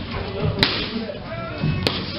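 Punches landing on boxing focus mitts: two sharp smacks, the first about half a second in and the second near the end, over music playing in the background.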